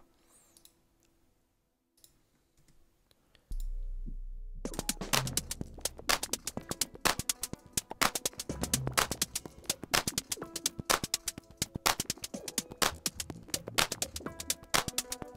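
Electronic minimal house (rominimal) track playing back from a DAW: nearly quiet at first with a few faint synth notes, then about three and a half seconds in a deep bass tone enters, and about a second later the full groove starts, with dense, rapid clicky drum-machine percussion over bass notes.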